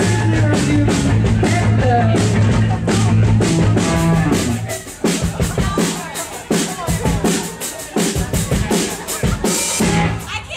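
A band playing live on a festival stage, loud. About halfway through the bass and the rest of the band drop out, leaving the drums playing on their own with regular hits.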